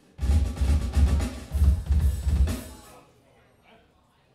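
Rock drum kit played live in a short burst of about three seconds, heavy bass drum hits under the snare, then it stops.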